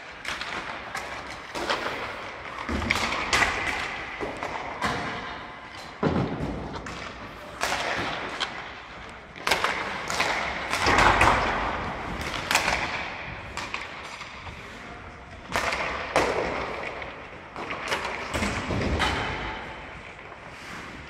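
Ice hockey practice in an arena: pucks and sticks clacking and thudding again and again, with skates scraping on the ice, all echoing through the rink.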